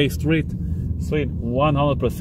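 Steady low rumble of a car driving slowly, heard from inside the cabin, with a man talking over it.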